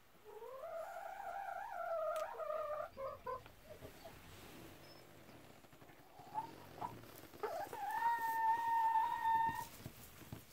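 Hen giving two long, drawn-out calls: the first rises and wavers for about three seconds, the second, near the end, is higher and held steady.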